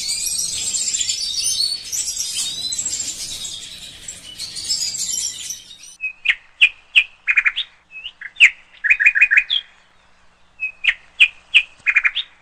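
European goldfinches (the large 'jilguero mayor' race) twittering and chirping together in an aviary cage, the chorus fading out over the first few seconds. After that, short clear bird chirps come in quick clusters separated by silent pauses, fewer towards the end.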